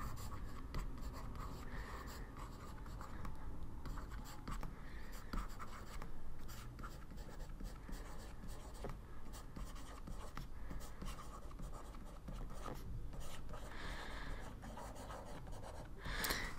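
Faint handwriting on a tablet: a stylus scratching and tapping through many short strokes as a line of text is written out.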